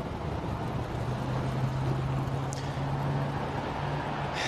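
A vehicle engine idling steadily: an even low hum over outdoor street noise.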